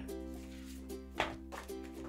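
Soft background music with held, steady notes, and a faint click a little past a second in.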